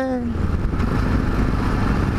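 Yamaha XT 660Z Ténéré's single-cylinder engine running steadily at road speed, mixed with wind noise on the microphone.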